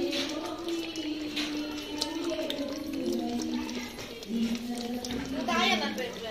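A voice singing a slow melody in long held notes, stepping up and down in pitch, as in a background song, with a few faint clicks.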